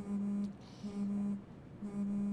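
Smartphone vibrating in repeated buzzes, each about half a second long with short gaps between, three in all: the phone signalling a stream of incoming messages.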